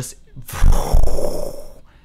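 A man imitating a dragon's fire breath with his mouth: a loud, rough rush of breath blown close into the microphone, starting about half a second in and lasting just over a second.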